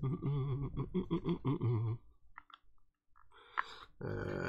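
A man's voice humming or droning a wordless tune for about two seconds. After that come a few faint clicks and taps.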